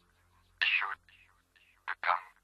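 A sampled whispered voice with no beat under it: a short whispered burst about half a second in, fainter traces after it, and a brief sharp one near the end.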